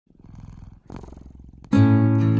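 A cat purring softly: two long purrs with a short break between them, the second starting just before the first second. Near the end an acoustic guitar comes in with a held note, much louder than the purring.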